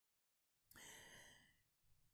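Near silence, then a faint breath from a man, lasting about a second, starting about a third of the way in.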